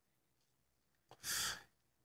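A man's single short, breathy exhale, sigh-like, about a second in, as he draws on and blows out smoke from a hand-rolled cigarette; a faint click comes just before it.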